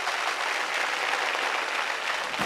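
Audience applauding steadily.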